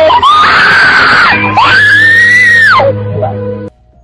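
Teenage girls screaming in fright: two long, high screams, each rising and then held, the second longer. Everything cuts off suddenly near the end.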